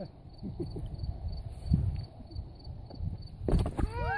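Wind buffeting the microphone in a low, uneven rumble, with a cricket chirping faintly about four times a second. A loud rustling knock comes near the end.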